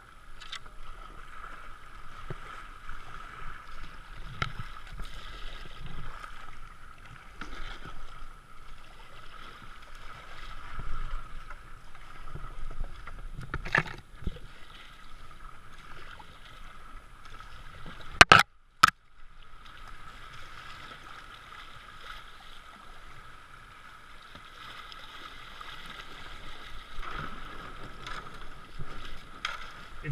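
Water rushing and splashing around a racing kayak running a shallow riffle of river, heard from a helmet-mounted camera, with irregular paddle splashes. About two-thirds of the way through come two sharp knocks about half a second apart, the loudest sounds.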